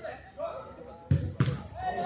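Two sharp thuds of a football being struck on a five-a-side pitch, about a third of a second apart, over players' voices.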